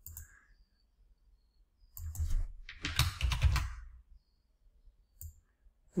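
Computer mouse clicking with rustling handling noise at the desk, in two short bursts about two and three seconds in, as shapes are drawn.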